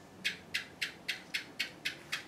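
A quick, even run of about eight short, sharp, hissy clicks, roughly four a second.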